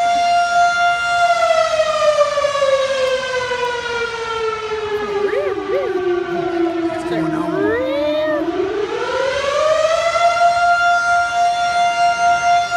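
Fire truck siren holding a steady note, then sliding slowly down in pitch for several seconds and climbing back up to the same note, where it holds again.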